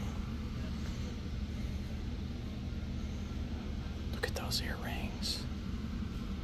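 Steady low hum of indoor room tone in a large store. A brief, faint voice comes in about four to five seconds in.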